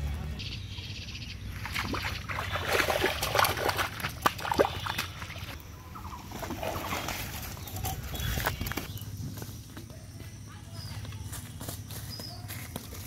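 A large hooked fish flopping and slapping on a wet muddy bank: a run of sharp slaps and thumps, loudest a few seconds in, then quieter rustling.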